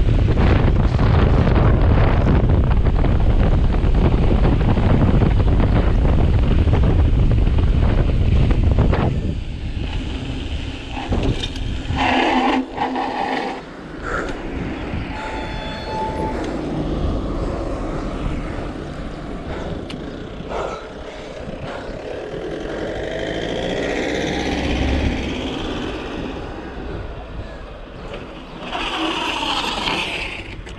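Heavy wind roar on the camera's microphone while a mountain bike descends fast on asphalt. About nine seconds in it drops away sharply as the bike slows, leaving quieter rolling noise with a few short knocks and squeaks.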